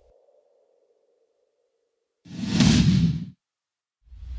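A faint tail of the song's last sound dies away. After a short silence comes a single whoosh sound effect of about a second, swelling up and cutting off, with a deep rumble under it: the sting of an animated logo.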